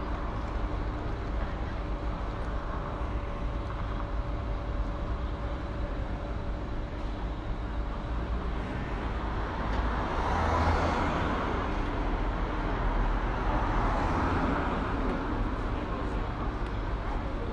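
Street traffic noise: a steady low rumble of road vehicles, with a vehicle passing close and swelling in loudness about ten seconds in and another a few seconds later.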